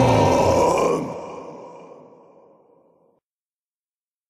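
The end of a heavy metal track: the last loud chord holds for about a second, then rings out and fades away over the next two seconds to dead silence.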